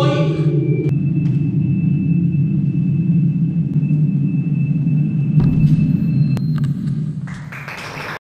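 A steady low rumbling drone with a thin, steady high tone over it, after a voice that stops about a second in; a few sharp clicks fall in the middle, and the sound fades near the end.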